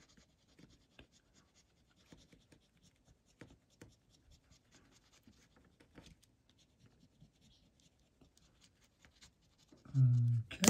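A metal scratcher tool scraping the latex coating off a lottery scratch-off ticket, faint and in short irregular strokes.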